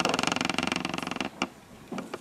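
A creak lasting a little over a second, made of fast, even clicks, then one short click.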